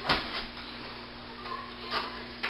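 Quiet handling noise from plastic drum panels being set down and the machine being reached for, with a short knock at the start over a faint steady low hum.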